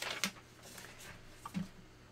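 Faint paper-handling noises: a couple of light taps as card stock pieces are set down on a wooden table, over quiet room tone.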